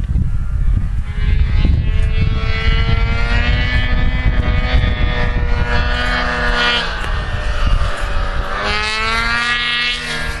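Snowmobile engine running under changing throttle, its pitch slowly rising and falling and climbing steeply near the end, over a heavy low rumble.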